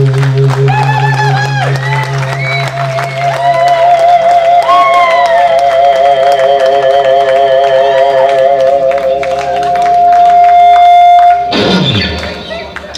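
Electric guitar played live through an amplifier with bass: long sustained, bent lead notes with wide vibrato, ending on one steady held note that cuts off suddenly near the end. Audience clapping and cheering underneath.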